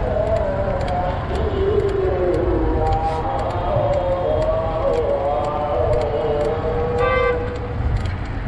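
Steady wind and road rumble from riding a bicycle, with a short vehicle horn toot about seven seconds in.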